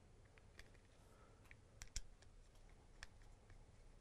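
Faint, scattered clicks and taps of a screwdriver and a polymer holster shell being handled while the holster's adjustment bolts are repositioned, the sharpest click about two seconds in.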